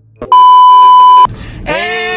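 Loud, steady test-tone beep at about 1 kHz, the tone that goes with a TV colour-bars test pattern, lasting about a second, with a click just before it and a short noisy hiss after it. Near the end a sustained held note with many overtones begins.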